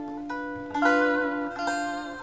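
Gibson ES-355 semi-hollow electric guitar with a tremolo, played by hand. A few notes and chords are picked in turn and each is left to ring on.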